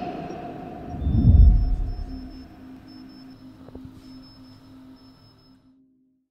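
Musical outro logo sting: the ringing tail of a hit, then a deep low boom swelling about a second in, with thin sustained tones that fade out shortly before the end.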